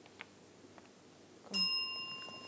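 Quiz-show time-up bell: a single ring struck about a second and a half in, its clear tone fading slowly, marking the end of the team's 60-second round. Before it, near silence with a faint tick.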